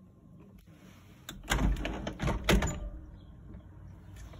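A cluster of sharp knocks and clicks over a low rumble, starting a little over a second in and dying away before three seconds, after a quiet start.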